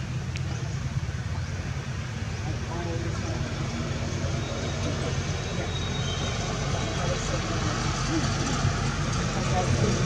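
Outdoor background: a steady low rumble like vehicle traffic or an idling engine, with faint voices of people talking in the distance.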